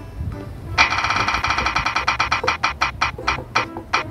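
Spinning-wheel sound effect: a fast run of short, pitched ticks starting about a second in and slowing down toward the end as the wheel loses speed.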